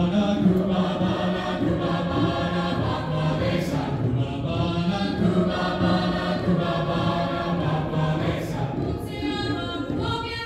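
Large mixed choir of high-school singers performing in a school gymnasium, holding long sustained chords with short breaks near four and eight and a half seconds in.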